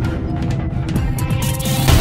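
Theme music of a TV news programme's opening titles, swelling in the second half with a rising rush of high sound and hitting a loud accent right at the end.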